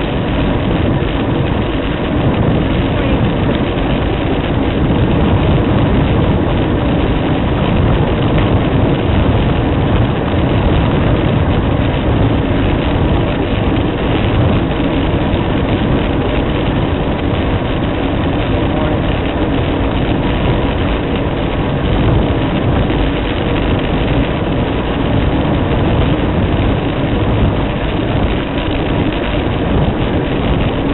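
Steady wind rush and road rumble on a bike-mounted camera's microphone while riding a fixed-gear bicycle along asphalt; a loud, even low rumble with no breaks.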